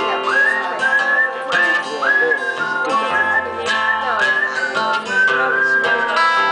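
A man whistling a melody into the microphone, each phrase swooping up into a held high note, over his own steady strumming on an acoustic guitar.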